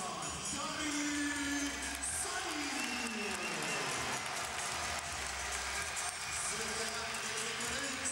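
Ice hockey arena crowd noise and cheering, with music mixed in, just after a home-team goal.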